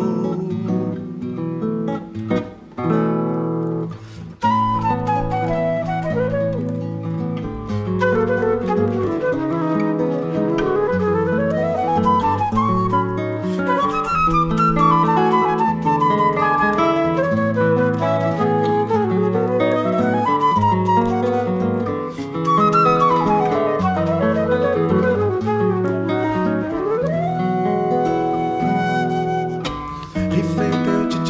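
Nylon-string classical guitar playing chords on its own for about four seconds. Then a flute enters with a fast solo of running scales up and down over the guitar, ending on a long held note.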